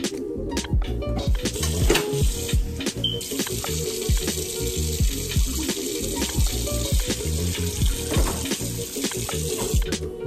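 Water running from a tap, starting about a second and a half in and stopping just before the end, over background music with a steady beat.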